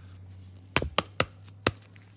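Four sharp plastic clicks, three in quick succession and one more about half a second later, as a trading card in a rigid plastic top loader is handled and set down on a hard surface.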